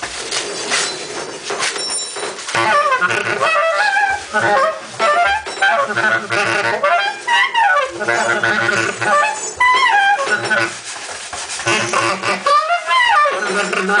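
Free-improvised saxophone playing: high wavering tones that bend up and down in stop-start phrases, over a low pulsing drone.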